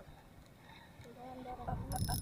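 Mostly quiet, with a faint voice in the background from about a second in; near the end a spinning fishing reel starts clicking as it is worked.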